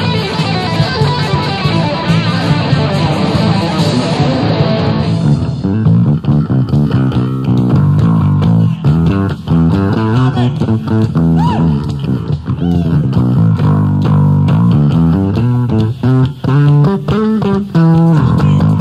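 A live band plays an instrumental passage led by guitar and bass. About five seconds in, the dense, bright full-band sound drops back to a sparser, choppy rhythmic groove.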